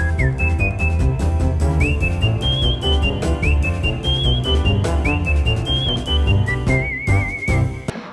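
Background music: a whistled melody over a steady beat and bass line, ending on a wavering held note.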